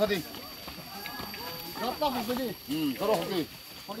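Several people's voices talking and calling out, the words unclear, with rising and falling calls in the second half.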